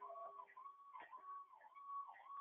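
Near silence, with a faint tone repeating about twice a second, each note dropping in pitch at its end.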